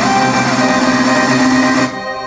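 Music played through a SonicGear StudioBar 500HD Maverick soundbar set to its music mode. The music drops sharply in level near the end.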